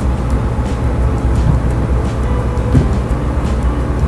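Chery QQ's engine idling, heard from inside the cabin as a steady low hum, with one short knock near the end.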